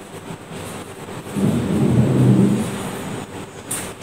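A low rumble that swells about a second in and fades out about two seconds later.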